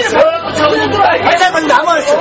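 Several men's voices talking over one another in a crowd, loud and continuous.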